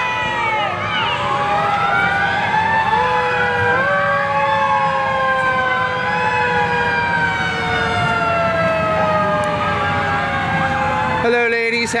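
Several sirens wailing at once, their overlapping tones slowly rising and falling.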